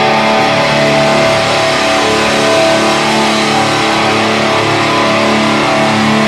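Heavy metal band playing live, the distorted electric guitars sustaining a held, ringing chord with little drum hitting.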